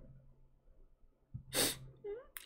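A man's single short, sharp burst of breath through the nose, like a sniff or stifled sneeze, about a second and a half in, after a quiet pause with a faint click just before it.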